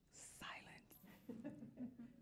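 Faint, off-microphone speech: a breathy whisper in the first second, then quiet low talking.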